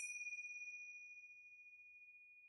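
A single struck meditation bell sounding the close of the session: one high, clear tone that starts suddenly and rings on, fading slowly, with fainter higher overtones dying away first.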